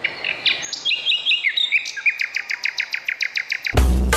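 Recorded birdsong played as the intro of a dance track: a run of short chirps that speed up into a fast trill. A heavy bass drum beat cuts in near the end.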